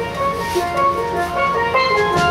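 Steel band playing: many steel pans ringing out a quick melody of short sustained notes over a steady low accompaniment.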